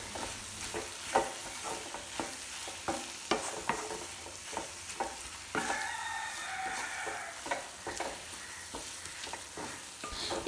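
Wooden spatula stirring and scraping mashed potato and onion masala around a nonstick kadai in irregular strokes, over a low sizzle of frying in oil.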